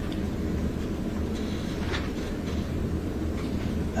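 Steady low background rumble of room noise through the courtroom microphone feed, with a few faint soft rustles around the middle.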